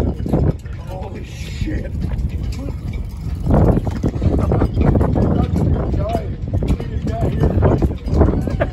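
Indistinct, muffled voices over a heavy low rumble. The rumble eases about half a second in and comes back louder about three and a half seconds in.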